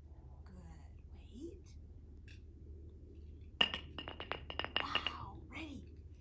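A hard retrieve article thrown onto brick pavers, landing and bouncing with a quick run of ringing clinks over about a second and a half.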